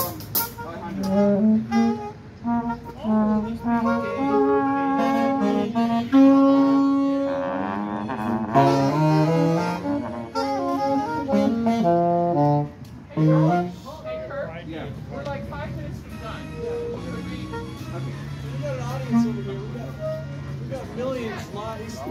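Brass band horns, saxophone, trombone and sousaphone, playing melodic phrases between songs. The phrases are busier in the first half and sparser later, with a long low held note near the end.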